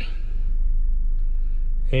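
Steady low rumble of a Honda Odyssey minivan idling, heard from inside the cabin with the transmission in reverse.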